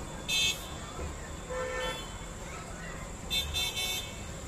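Vehicle horns honking in street traffic below: a short high toot just after the start, a lower honk in the middle, and a quick run of toots near the end.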